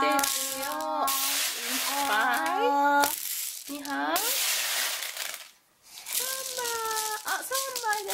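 Small plastic beads rattling and pouring as a toy plastic spoon scoops them up and tips them into a plastic plate compartment, in several spells with a brief silence a little past the middle.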